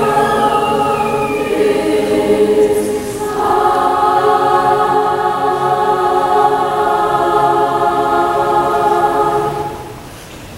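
Large combined high-school mixed choir singing, moving to a new chord about three seconds in and holding it as one long sustained chord that is released near the end.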